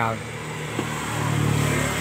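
A motorbike engine running close by, a steady low hum that grows louder over the two seconds.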